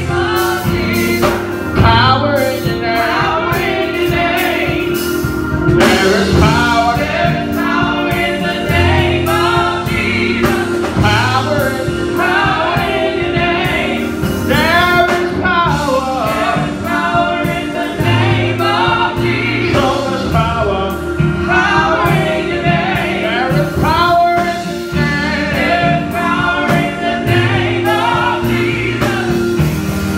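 Women's gospel vocal group singing into microphones, several voices together, over sustained low backing notes.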